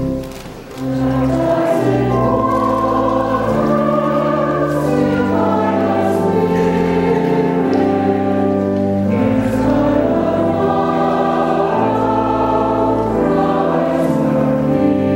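Church choir singing a sung blessing with organ accompaniment, held chords moving slowly from note to note. After a brief dip the voices come in about a second in.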